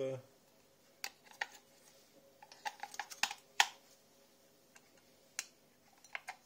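Scattered small plastic clicks and taps, about half a dozen, from the batteries and battery compartment of a Silvercrest automatic soap dispenser being handled while its battery installation is checked; the sharpest click comes about three and a half seconds in.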